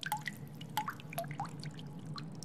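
Water dripping from a melting ice sculpture: a quick run of short plinking drops, several a second, each rising in pitch, over a low steady hum.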